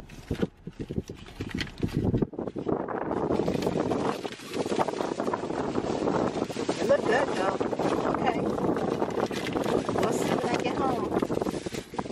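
Paper fast-food bag and foil-lined sandwich wrapper rustling and crinkling as they are opened and handled.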